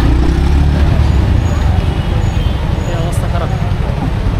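Congested city street traffic: a steady mix of engines and road noise with a heavy low rumble, strongest in the first second, and voices of people around in the background.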